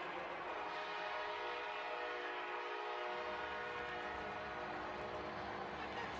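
Stadium horn sounding one long, steady multi-note blast like a train horn, over crowd noise, to mark a touchdown.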